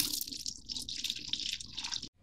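Mead being poured from a one-gallon glass jug into a plastic pitcher, splashing and gurgling unevenly, as the brew is rough-racked to get the lime-leaf solids out. The pouring cuts off suddenly at the end.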